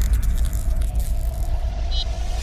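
Sound effect of an animated logo sting: a deep bass rumble under a fading whoosh of hiss, with a short high chime near the end.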